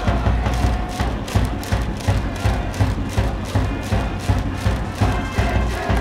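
A high school cheering section's brass band playing a baseball cheering song, with a steady bass-drum beat driving it.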